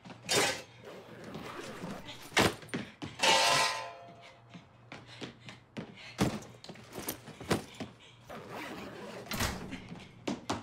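Kitchen handling noises: several separate knocks and thuds as a whole roast turkey and its metal roasting pan are moved about, with a short vocal sound about three seconds in.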